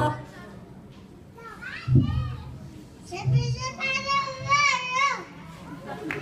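Young children's high-pitched voices talking and calling out in two short stretches, about a second apart, right after the music cuts off at the start.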